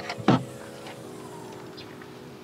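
A sharp knock near the start, then a steady hum with a few even tones from a Volkswagen Golf GTI (Mk7).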